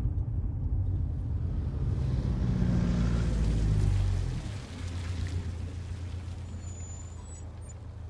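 A small van driving past on a road and away: engine and tyre noise swell loud with a rising engine note as it passes, about three to four seconds in, then drop suddenly to a quieter, steady rumble as it recedes.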